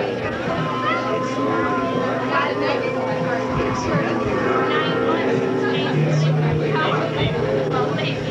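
Indistinct chatter of several voices talking over one another, with a steady low hum underneath.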